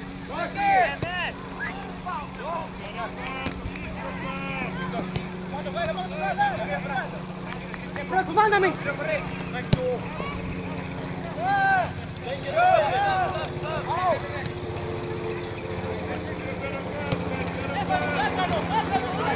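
Distant shouts and calls of players across a soccer field, short and unintelligible, over a steady low hum. A single sharp knock sounds about ten seconds in.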